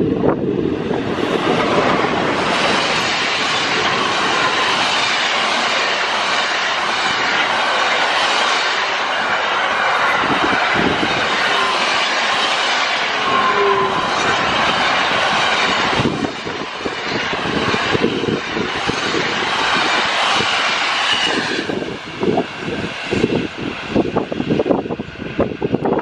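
Freight train of container and trailer wagons behind an electric locomotive passing close by at speed: a loud, steady noise of wheels on rail. It drops away at about 22 seconds as the last wagons go by.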